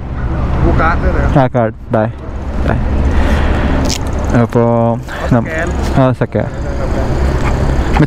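Steady low rumble of a motor vehicle engine running close by, with a broad hiss over it.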